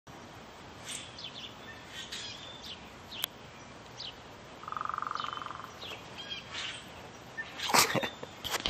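Songbirds chirping, with scattered short calls and a quick buzzy trill about halfway through. A sharp click comes a little after three seconds, and a brief louder rush of noise just before the end.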